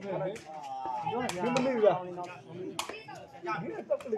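A sepak takraw ball being kicked back and forth in a rally: several sharp smacks a second or so apart. Spectators talk throughout.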